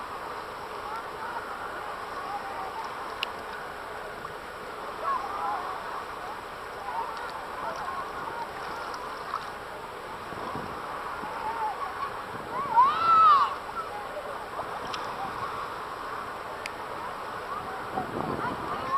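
Voices of swimmers and children calling and chattering out in the water, with one loud high shout rising and falling about thirteen seconds in, over a steady hiss of wind and lapping water.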